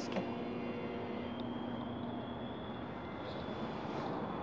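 Steady city street background: a hum of distant traffic, with a faint low hum that fades out a little over a second in.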